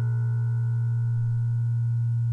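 A single steady low synthesizer drone held on its own, a pure sustained tone with little else over it, in dark ambient electronic music.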